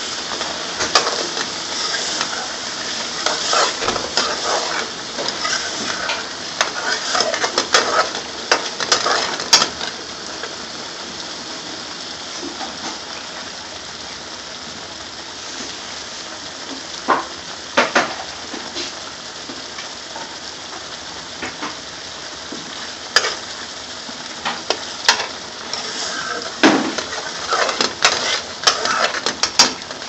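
Thick curry sauce bubbling and sizzling in a metal pan, with a steel ladle stirring it and clinking against the pan. The clinks come in clusters, busiest in the first ten seconds and again near the end, with a couple of single knocks in between.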